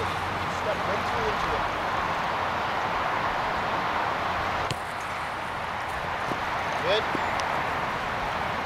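Steady outdoor background noise, an even hiss, with one short sharp knock a little past halfway.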